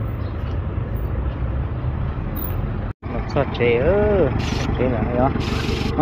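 A vehicle engine idling with a steady low hum. The sound drops out for a moment about halfway through, then a voice speaks briefly and a plastic bag rustles near the end.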